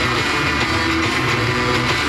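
Guitar-led pop-rock music from an FM radio broadcast, playing through a loudspeaker, with strummed guitar over a steady bass beat.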